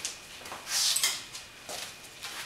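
A ruler being picked up and handled: one short scraping rustle, about half a second long, a little before halfway.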